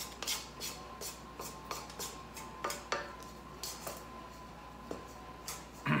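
Wooden spoon scraping and knocking against the stainless steel bowl of a KitchenAid stand mixer as it mixes stiff cookie dough at low speed: irregular clicks and knocks over a faint, steady motor hum.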